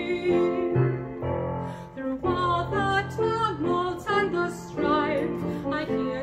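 A solo female voice singing a hymn with vibrato over piano accompaniment.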